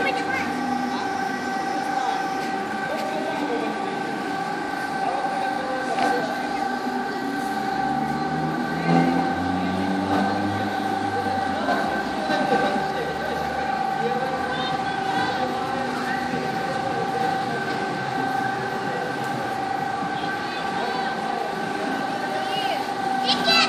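Steady multi-tone mechanical whine of a chain swing tower ride's drive as it spins, with a low hum that rises in pitch around the middle. Scattered crowd voices run underneath.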